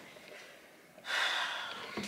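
A woman's breathy sigh about a second in, fading out over the next second.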